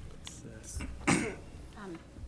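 A person clears their throat once, about a second in: a short, rough burst.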